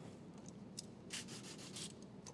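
Faint, short rubbing strokes of a cleaning tool along the top edge of a truck's door glass, several in quick succession in the second half.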